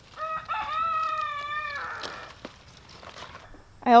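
A rooster crowing once: a short first note, then one long held note, lasting just under two seconds.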